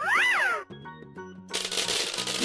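Cartoon sound effects over children's background music: a loud short cry rises and then falls in pitch, then about a second and a half in a dense noisy burst starts up as a shower of balls bursts out.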